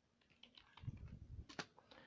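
Faint typing on a computer keyboard: a few soft key taps, with one sharper click about one and a half seconds in.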